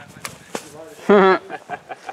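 A longsword swung at a thrown target: a quick sharp swish about half a second in. It is followed by a loud, wavering vocal exclamation about a second in.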